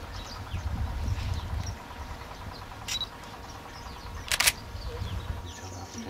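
Open-air ambience with small birds chirping in short high calls, a low rumble in the first couple of seconds, and two sharp clicks: a light one about three seconds in and a louder one, the loudest sound here, about four and a half seconds in.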